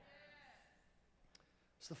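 Near silence: room tone, with a faint voice fading away in the first half second and a small click a little past halfway. A man starts speaking right at the end.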